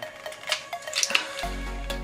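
Background music with a steady beat, over rustling and clicking from a makeup compact's packaging being unwrapped by hand, loudest around a second in.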